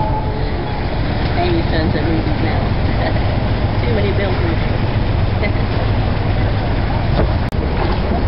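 Sailboat's inboard engine running steadily, a low rumble under indistinct voices of people talking on deck. The sound drops out for an instant near the end.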